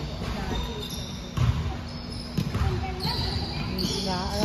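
Balls bouncing and being kicked on a hardwood gym floor, with two louder thumps about one and a half and two and a half seconds in, over background voices in a large gym hall.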